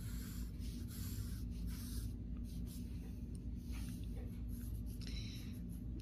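Graphite pencil drawing lines on a sheet of paper: several short scratchy strokes.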